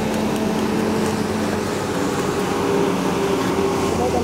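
A motor vehicle's engine running steadily, a hum with several held tones.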